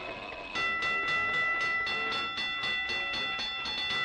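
Cartoon train effect: a rhythmic chugging at about four strokes a second under a held multi-note whistle chord, starting about half a second in.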